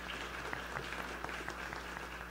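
An audience applauding: many hands clapping in a steady, even patter.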